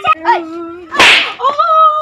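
Drawn-out wailing cries in long held notes, broken about a second in by one loud, sharp smack.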